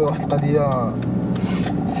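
A man talking, with a car's steady cabin noise beneath.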